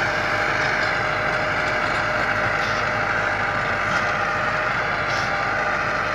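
Massey Ferguson 385 tractor's four-cylinder diesel engine running steadily under load as it pulls a rotavator through tilled soil, with a steady faint hum.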